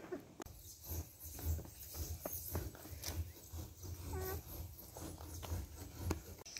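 Domestic hens clucking softly in short, scattered notes, over a low rumble on the microphone.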